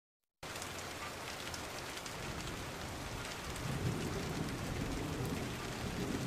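Rain falling steadily with scattered drop ticks, and a low rumble of thunder building from about three and a half seconds in.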